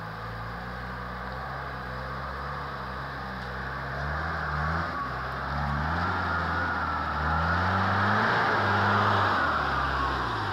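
Toyota Land Cruiser four-wheel drive climbing a muddy track. Its engine revs up in repeated rising surges and grows louder as it comes close, with a high whine over it in the second half.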